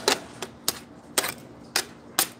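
A series of sharp, separate clicks at uneven spacing, about five in two seconds.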